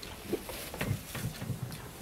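Faint, broken murmuring of voices in a small room, in short scattered snatches.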